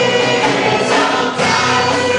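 Live amplified gospel worship music: a lead singer and a group of backing singers singing together over drums, keyboard and bass guitar, loud and continuous.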